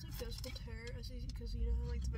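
A child speaking quietly, in a higher voice than the adult's, inside a car over a low steady rumble.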